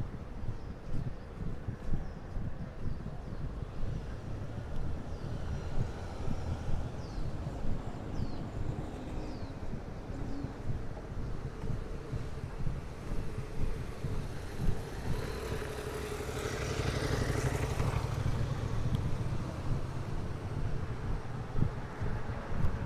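City street ambience heard while walking: a steady low traffic rumble, with a motor vehicle passing by, louder for a few seconds about two-thirds of the way through. A few short, high bird chirps sound in the first half.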